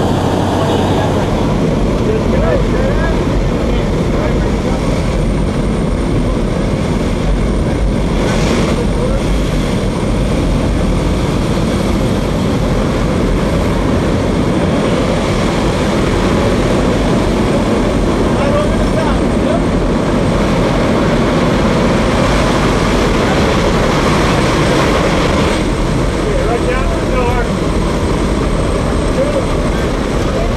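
Propeller engine of a small jump plane in flight and wind rushing through its open door, a loud, steady noise.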